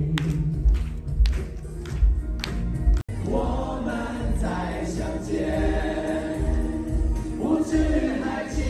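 Amplified male vocal ballad over a backing track, with a few scattered handclaps in the first three seconds. An abrupt edit cut about three seconds in, after which a man sings into a handheld microphone over the accompaniment.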